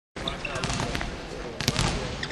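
Basketballs bouncing on a gym floor: several sharp, irregular thuds over background voices.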